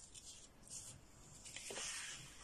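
Paintbrush with gouache stroking across paper: a few soft, scratchy strokes, the longest and loudest near the end.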